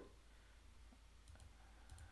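Faint computer mouse clicks over near silence, a few of them in the second half.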